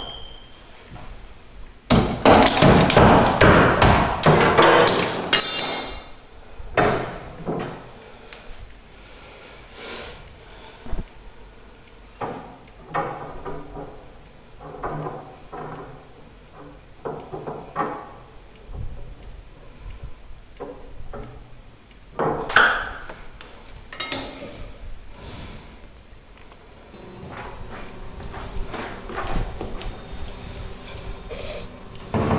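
Hammer blows knocking old cement out of a shower wall around the valve: a loud, rapid run of strikes about two seconds in lasting some four seconds, then scattered knocks and clinks, and another short cluster of strikes later on.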